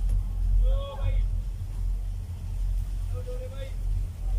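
Low, uneven rumble of wind buffeting a phone microphone while riding a chairlift, with short snatches of people's voices about a second in and again near the end.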